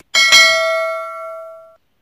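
A bell 'ding' sound effect for a notification bell, struck twice in quick succession, then ringing on and fading out over about a second and a half.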